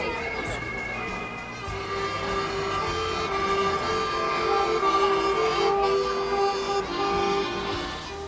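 Accordion playing a tune, a melody of held notes that change every half second or so over a steady chord.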